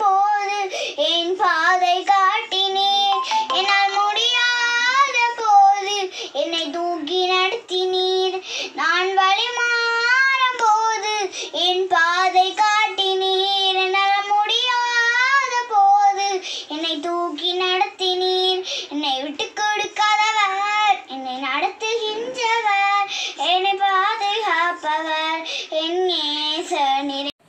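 A young girl singing a song solo in a high child's voice, with long held notes and short breaths between phrases.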